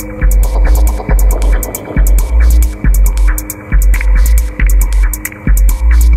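Electronic club music from a DJ mix: deep sub-bass pulses about once a second under rapid hi-hat ticks and a steady held synth drone.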